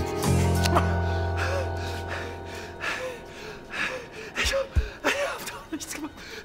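A low bass note from the film's guitar score rings out and fades over the first two seconds. Then a man gasps for breath again and again, in short strokes.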